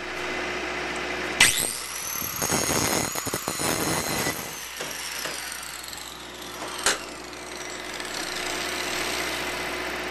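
Angle grinder switched on about a second and a half in, its whine rising quickly, grinding a bevel into the end edge of a steel handrail bar for a couple of seconds. It is then lifted off and coasts down with a slowly falling whine, and there is a sharp click near seven seconds.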